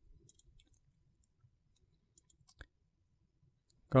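A few faint computer mouse clicks, scattered through the first three seconds.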